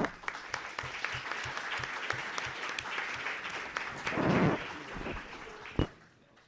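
Audience applauding, fading away just before the end. A dull bump about four seconds in is the loudest moment, and a single sharp knock comes just before the clapping stops.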